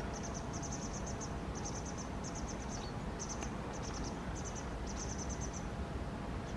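An insect, most likely a cricket, chirping in short high-pitched pulsed trills that repeat about once or twice a second, over a steady low outdoor background rumble.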